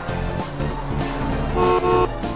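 Children's cartoon music with a bus horn beeping twice near the end.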